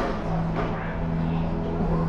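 Steady low background hum with a faint murmur of voices in a busy room.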